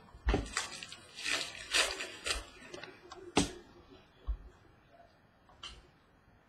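Trading cards being flipped and slid through by hand, a run of quick papery swishes and flicks that thin out after about four seconds.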